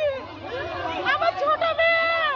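A woman wailing and crying out in distress, her voice high and drawn out in long bending notes, with other voices behind her.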